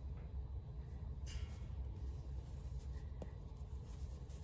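Faint rustle of a white cotton shirt sleeve being stretched out by hand, over a low steady room hum.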